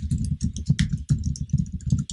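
Fast typing on a computer keyboard, an irregular run of key clicks and thuds.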